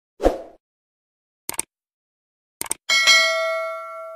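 Subscribe-button animation sound effects: a short swish, two quick clicks, then a bright bell ding that rings on and fades over about a second and a half. The ding is the loudest part.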